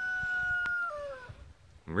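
A rooster crowing: one long held note that drops in pitch and fades away about a second in. A single sharp click partway through.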